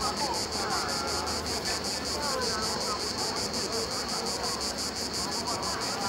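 Cicadas chirring in a fast, even pulse, several beats a second, over faint distant voices.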